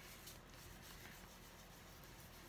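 Near silence, with only a faint, soft rubbing of a foam ink blending tool worked in circles over paper.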